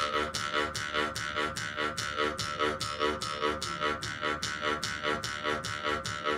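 Mukkuri, the Ainu bamboo mouth harp, played with rapid pulls on its string: a buzzing, twanging drone repeated at an even rhythm of about four to five strokes a second, with its overtones changing from stroke to stroke to make a melody.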